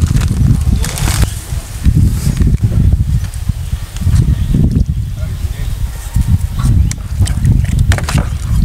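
A plastic spatula stirring chunks of pork in thick red chile sauce in a plastic bowl, with a few short clicks and scrapes, under a heavy, uneven low rumble of wind on the microphone.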